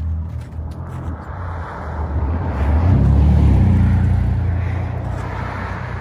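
A car driving past on the road, its engine hum and tyre noise swelling to the loudest about three seconds in, then fading as it moves away.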